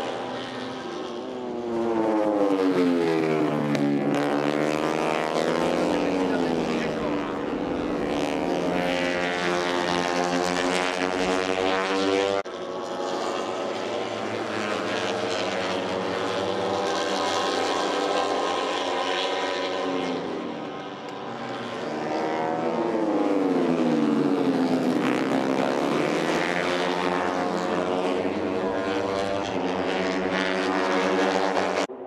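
Moto3 racing motorcycles' 250 cc single-cylinder four-stroke engines running at high revs as the bikes pass close by: twice the pitch drops steeply as they go past, then climbs again as they accelerate through the gears. The sound changes abruptly about twelve seconds in.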